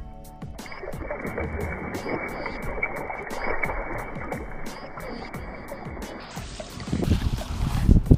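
Water splashing and sloshing in a hole in the ice as a brown trout is released and swims off, under background music with a steady beat.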